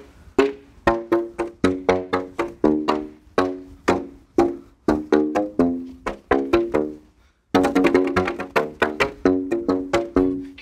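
Black plastic pipes of different heights struck on their open ends with flip-flop soles, each slap pushing air through the tube for a short hollow pitched note. A run of notes at changing pitches, about three a second, breaks off briefly about seven seconds in and then goes on faster.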